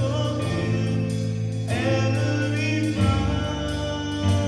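Live gospel worship music: a keyboard holding sustained low chords with singing over it.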